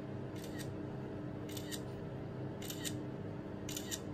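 Smartphone camera shutter sound, four quick double-clicks about a second apart as photos are taken one after another.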